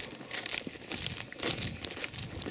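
Footsteps through dry, dead grass: irregular rustling and crunching, a few louder swishes about half a second and a second and a half in.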